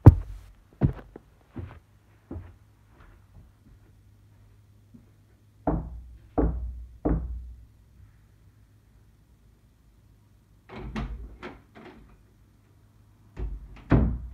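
A series of dull knocks and thuds: a few single thumps at the start, three evenly spaced knocks a little under a second apart about six seconds in, and a quick cluster of knocks near the end, over a steady low hum.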